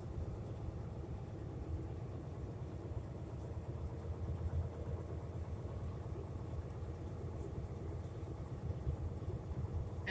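Truck engine running steadily at low speed, heard from inside the cab as a constant low rumble while the truck rolls slowly.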